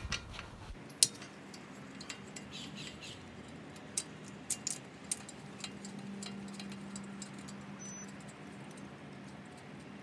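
Scattered light metallic clicks and taps as the two small rotor retaining screws are worked out of the brake rotor's hub face, with a faint steady hum underneath in the second half.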